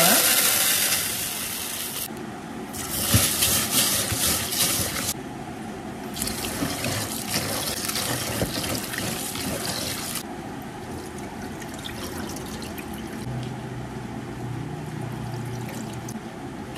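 Glutinous rice being washed in a plastic basin in a stainless steel sink: water pours into the basin in three loud spells over the first ten seconds, then hands swish and rub the grains in the water more quietly.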